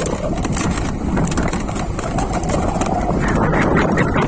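Riding noise on a moving e-bike: wind rumbling on the microphone along with tyre and road noise. A faint whine rises in pitch from about a second in and then holds steady. Light rattling clicks run throughout.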